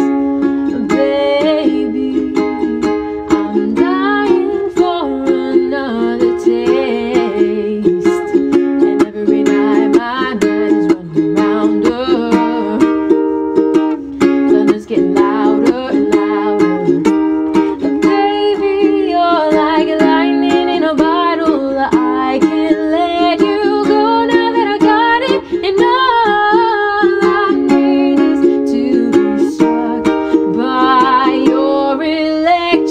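A woman singing a pop song while strumming a ukulele, with steady rhythmic strumming under her voice.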